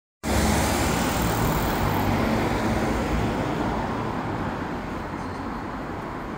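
City street traffic: the steady noise and low rumble of vehicles on the road, loudest at the start and slowly fading over the few seconds.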